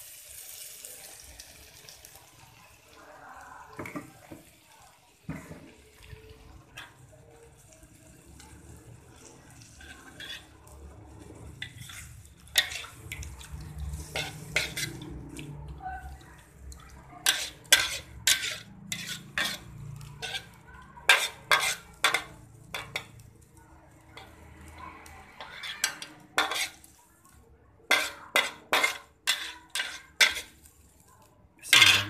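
A cooking utensil stirring octopus and squid in sauce in a pan, scraping and clinking against the metal, with sharp knocks coming thick and fast in the second half. A faint hiss of the sauce cooking lies under it.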